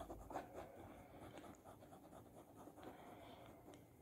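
Faint scratching of a pen drawing a diagram, in short irregular strokes.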